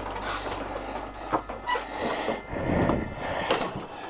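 Trekking poles and feet knocking and clattering on a wooden deck while a person settles into a chair, with a few sharp knocks and a stretch of rustling movement.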